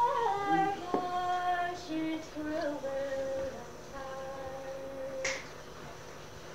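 A woman singing a traditional song unaccompanied, heard on a cassette home recording. She moves through several notes and holds a long final note. A short click comes about five seconds in, then a pause.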